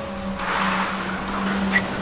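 A car driving past on a wet road: a rushing tyre hiss that swells from about half a second in. A steady low drone of background music runs underneath.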